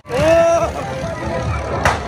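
A drawn-out exclaimed 'oh' from a rider on a swinging fairground ride, rising and then held for about half a second, over the fair's steady din of music and ride rumble; a sharp click comes near the end.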